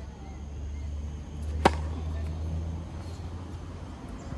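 A single sharp tennis racket strike on the ball, with a short ringing tail, about a second and a half in, over a steady low rumble.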